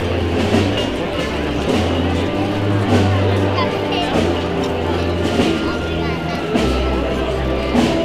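A Spanish processional band playing a slow Holy Week march, with low brass holding long notes that shift about once a second.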